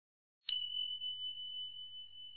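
A single high chime struck about half a second in, ringing on at one steady pitch with a slight waver in loudness: an intro sound effect.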